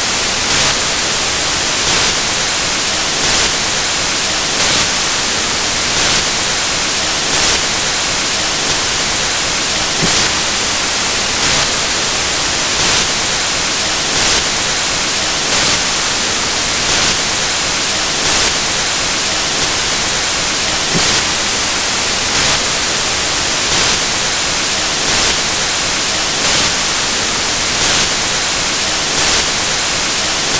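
Loud, steady static hiss on the recording with a faint regular pulse about every second and a half, and no speech. This is the sign of a failed or lost audio feed: the lecturer is talking but his voice is not recorded.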